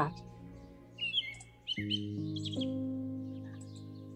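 Soft background music of sustained chords that change a few times, with short bird chirps mixed in, most of them in the first half.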